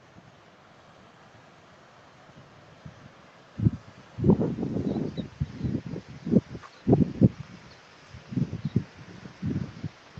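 Wind buffeting a phone's microphone: faint hiss at first, then from about four seconds in, irregular gusts of low rumble.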